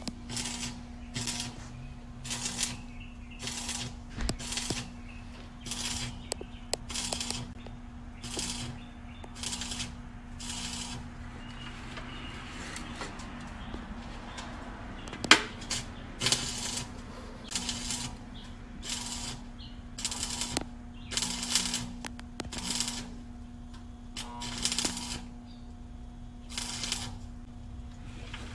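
Stick welder arc crackling in short pulses, about two a second, as the rod welds the rusty sheet-metal floor pan of a Plymouth Duster. There is a steadier stretch of arc in the middle and a steady hum underneath.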